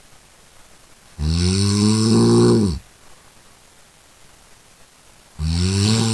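A person snoring: one long snore starting about a second in and lasting about a second and a half, dropping in pitch as it ends, then another snore beginning near the end.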